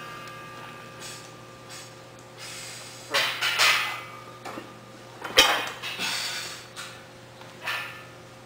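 Loaded axle bar being cleaned: short, hard breaths while setting over the bar, then a single sharp clank about five and a half seconds in as the axle comes up to the chest. A steady low hum runs underneath.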